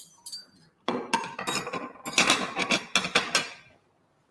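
Ceramic plates and a metal fork and spoon clattering and clinking as they are handled and set down on a table. A few light clicks come first, then a busy run of clinks from about a second in, dying away near the end.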